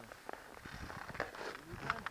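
Skis and ski poles shuffling and crunching on packed snow as a skier starts to move, a run of short crunches and scrapes.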